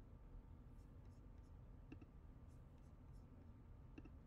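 Near silence: faint room tone with two soft clicks, about two seconds in and again at the end, as a computer mouse is clicked to open and start a video.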